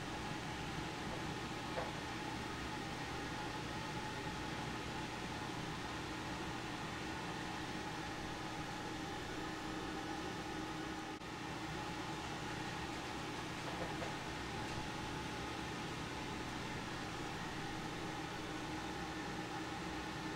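Steady room hiss with a faint, even hum of several steady tones, as from ventilation running. A couple of faint ticks near the start and about two-thirds of the way in.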